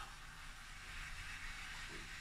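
Low, steady background hiss with a faint low hum: room tone, with no distinct sound standing out.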